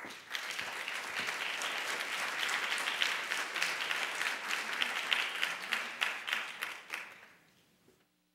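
Audience applauding, starting all at once and dying away over the last second or so.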